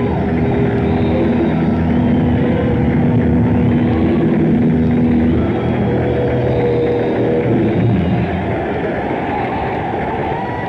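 Rough, distorted audience recording of a live rock band holding long sustained notes over a dense wash of noise. The held notes drop out about five seconds in and again near eight seconds, leaving the noisy hall wash.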